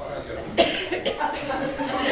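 A man's voice making short coughing, throaty vocal noises, with a sudden loud burst about half a second in.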